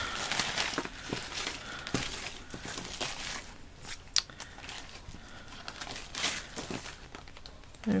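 Crinkling of a plastic zip-top bag and small chipboard and paper embellishments being handled and sorted, with irregular light crackles and taps. There is one sharp tick about four seconds in.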